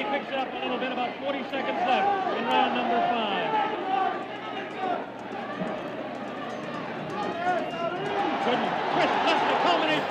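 Soundtrack of archival boxing-match footage played over a hall's loudspeakers: ringside crowd noise with a commentator's voice. It sounds narrow and dull, with little above the upper midrange, and starts abruptly.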